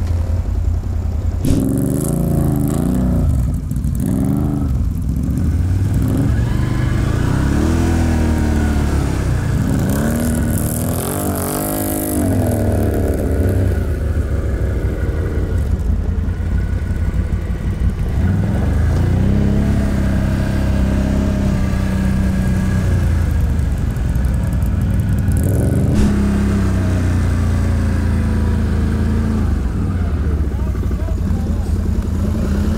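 ATV engine heard from the rider's seat, revving up and down repeatedly as the quad pushes through deep snow.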